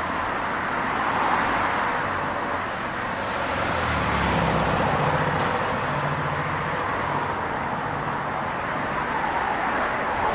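Steady traffic noise from a busy multi-lane city road, with a passing vehicle's low engine hum coming up in the middle and fading near the end.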